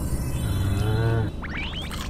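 An added cartoon-style sound effect: a low pitched tone held for under a second, followed near the end by a few quick rising whistle-like glides.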